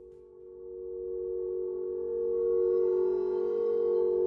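Logo sting: a held electronic tone, two close pitches sounding together, swelling louder over the first two seconds. Higher ringing overtones come in about halfway through.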